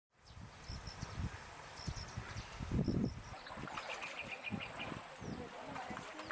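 Outdoor ambience: short, high bird chirps in pairs about once a second over a low rumble, with faint distant voices. About halfway through, a quick run of chirps.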